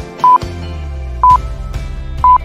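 Electronic countdown-timer beeps: a short, loud, single-pitched beep about once a second, twice here, over background music that picks up a deep bass line about half a second in.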